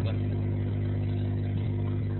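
A steady low electrical hum with several evenly spaced tones, constant throughout and unchanging.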